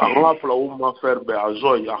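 Speech only: a man talking in French.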